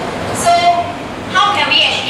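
Indistinct talking voices in a classroom over a steady background rumble.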